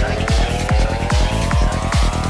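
Psytrance track with a fast, steady kick drum and a group of synth tones slowly rising in pitch together over it, a build-up riser.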